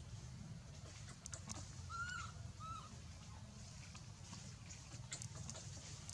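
Baby macaque giving two short, arching squeaks about two seconds in, over scattered rustling and ticking of dry leaves and a low steady hum.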